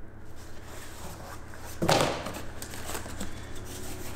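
Paper and cardboard packing being handled and rustled while a shipping box is unpacked, with one louder rustle about two seconds in.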